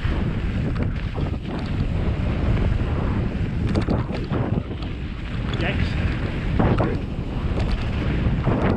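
Wind buffeting the microphone of a camera on a mountain bike riding fast downhill, over a steady rumble of knobby tyres rolling on dry dirt and gravel, with scattered clicks and rattles from the bike over bumps.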